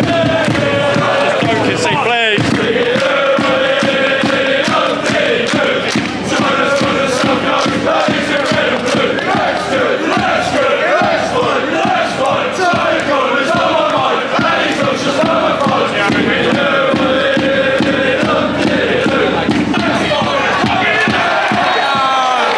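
Football crowd in a stand singing a chant together, loud and continuous.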